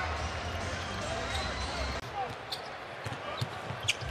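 Arena crowd noise during an NBA game, which drops suddenly at an edit about two seconds in. It gives way to quieter court sounds, with a few sharp knocks of a basketball bouncing on the hardwood near the end.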